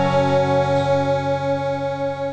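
Music: one long held chord of steady, gently pulsing notes.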